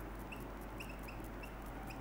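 Marker pen squeaking against a whiteboard while writing: about six short, high squeaks at uneven intervals.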